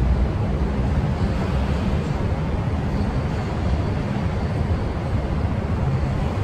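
Steady low rumble of city background noise with no distinct events.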